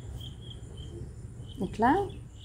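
Faint, high-pitched chirping in short separate notes, a few a second, over quiet room tone. A brief voice sound, rising in pitch, comes near the end.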